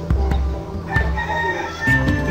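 Background music with a strong bass line. A rooster crows once over it, starting about a second in as one long, slightly falling call.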